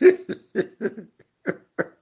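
A man laughing in a run of short bursts, about three a second, that fade away.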